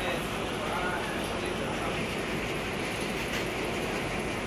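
Steady background noise of a small grocery store, with faint voices in the background.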